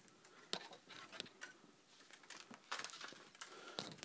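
Faint rustling and scattered light clicks of gloved hands unwrapping a coil of steel piano wire, with a short run of handling noise in the second half.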